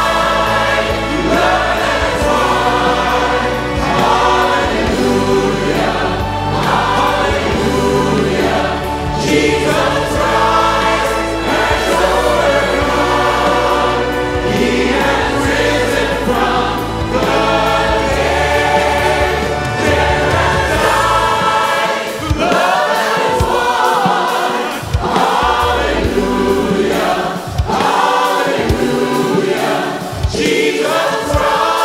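A choir singing a Christian worship song about Christ's resurrection, with instrumental accompaniment. About two-thirds of the way in the low bass drops away and sharp rhythmic hits carry on under the voices.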